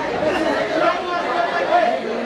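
Many voices at once: a group of Adi women chanting a Solung festival song together, mixed with crowd chatter.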